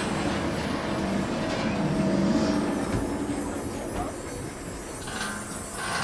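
A city bus running, heard from inside: a steady engine hum over road noise, with a couple of low knocks about three and four seconds in.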